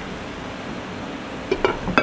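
Water spinach, tempeh and egg sizzling steadily in a wok, with a few short clinks near the end as the glass lid is handled on the pan.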